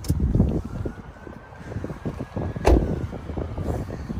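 Irregular rumbling of wind and handling noise on a phone microphone as the camera is moved out of the car, with one sharp thump a little past halfway.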